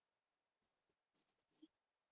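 Near silence, with a few faint, short scratches of chalk on a blackboard in the second half.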